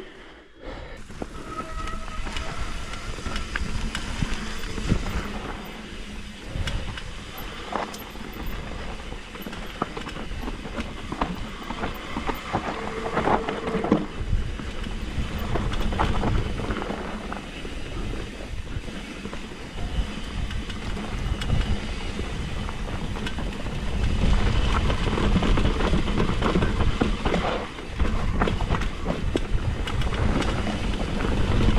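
Mountain bike riding fast down a rocky dirt trail: tyres rumbling over dirt and stones while the bike's chain and parts rattle and clatter, with a couple of brief brake squeals. Wind buffets the microphone, stronger near the end.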